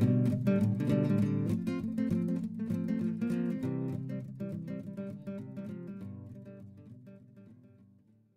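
Strummed acoustic guitar playing a song's instrumental outro, fading out steadily to silence by the end.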